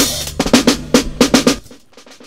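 Processed drum loop with kick and snare playing through a drum-bus chain of compression, saturation and clipping, with a groove echo delay turned up. The loop stops about three-quarters of the way through, leaving faint echo repeats dying away.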